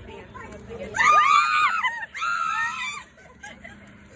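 A woman screaming: two long, high-pitched screams, one after the other, starting about a second in.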